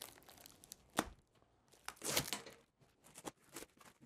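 Plastic packing strap and clear plastic wrap being pulled off a cardboard shipping box: a sharp click about a second in, then tearing and crinkling of the plastic against the cardboard.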